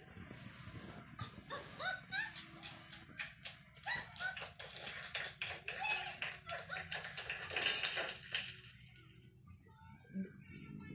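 Quick, irregular hand claps mixed with short rising vocal yelps, growing densest toward the end and then dying away about a second before it closes.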